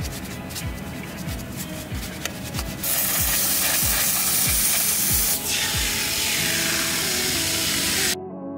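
Brush bristles scrubbing foamed cleaner on an engine, then from about three seconds in a loud steady spray hiss of liquid jetted over the engine bay, with a short break about halfway through. Background music with a steady beat plays throughout.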